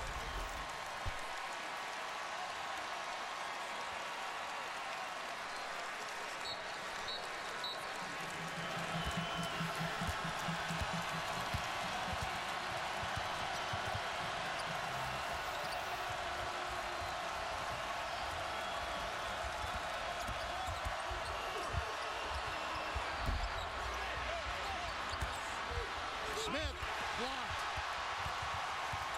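Basketball being dribbled on a hardwood court under a steady din of arena crowd noise, the bounces coming through from about eight seconds in, with a few shoe squeaks near the end.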